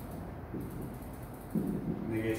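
Marker squeaking and tapping on a whiteboard as tick marks and numbers are drawn along a graph's axis, with a brief low sound near the end.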